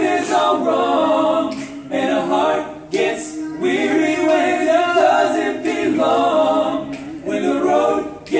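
Men's a cappella group singing in close harmony, sustained chords sung in phrases with short breaks between them.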